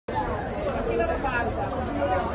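Crowd chatter: several people talking at once in the background, with no single voice standing out.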